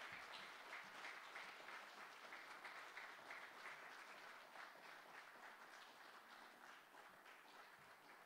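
Faint audience applause, dying away steadily.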